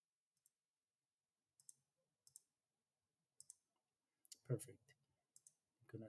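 Faint computer mouse clicks against near silence: scattered single clicks and quick double clicks, with a slightly louder soft sound about four and a half seconds in.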